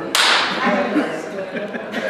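A high-five: one sharp slap of palms just after the start, fading quickly, with people talking around it.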